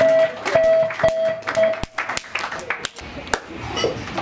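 A single guitar note picked over and over, about twice a second, stopping after about two seconds. Sharp knocks from the stage and drum kit come through it, and room chatter follows.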